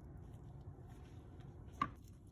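A low steady hum with one sharp knock near the end: the soap loaf handled against the clear acrylic soap cutter.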